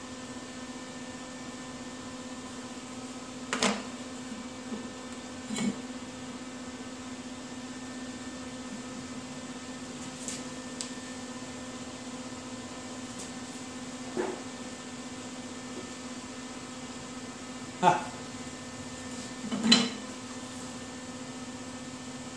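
A steady electrical hum, with about five sharp metallic knocks as a steel belt pulley and small parts are handled and set down on a diamond-plate steel table; the loudest two knocks come near the end.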